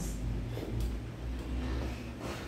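Low, steady rumble of background noise.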